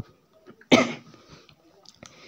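A single short cough, about two thirds of a second in.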